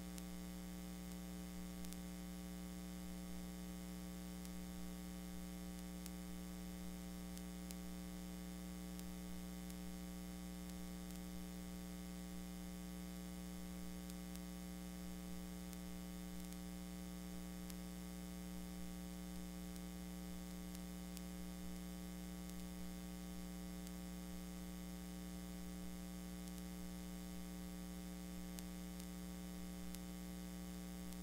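Steady electrical mains hum with a buzzy edge and a hiss of static, unchanging throughout.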